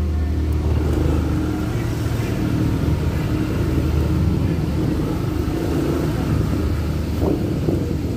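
Steady low hum of motor vehicle engines running, with road noise.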